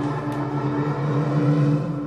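Low, steady drone from a TV drama's soundtrack, swelling slightly late on before easing off.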